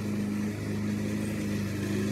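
A motor running steadily: a low, even hum whose pitch does not change.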